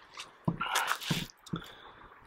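A knife slicing through a still-green snake gourd (Trichosanthes kirilowii): a cut through the rind and flesh lasting under a second, starting about half a second in, followed by a shorter, fainter sound as the halves come apart.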